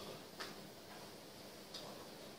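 Two faint, light clicks about a second and a half apart over quiet room tone.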